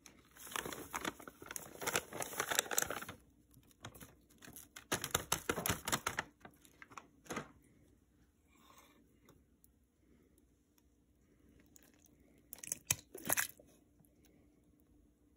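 Plastic bag of angel food cake mix being torn open and crinkled as the dry mix is shaken into a bowl, in two bursts of crackling. Near the end there is a short clatter as a can of crushed pineapple is tipped over the bowl.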